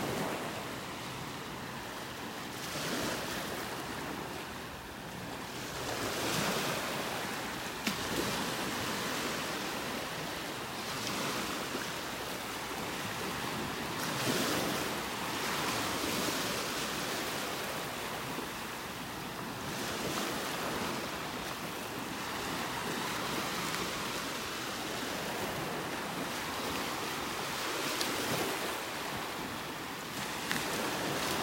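Small waves breaking and washing up on a sandy beach, the surf swelling and easing every few seconds.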